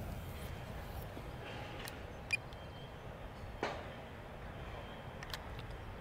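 Steady low background noise, with a few short clicks in the middle, the loudest about three and a half seconds in.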